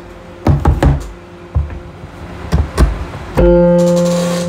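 Several short knocks, then, near the end, an electronic keyboard sounds a sustained low F3 note (the bottom of the alto range) that fades slowly.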